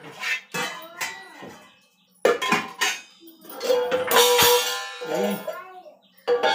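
Stainless steel vessels clanking against each other on a shelf as one is taken down: several sharp metallic strikes, each leaving a ringing tone, with a louder ringing stretch in the second half.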